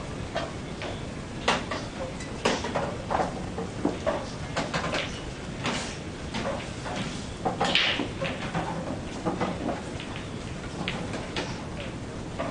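Steady background room noise with irregular sharp clicks and knocks, loudest about a second and a half in and again near eight seconds.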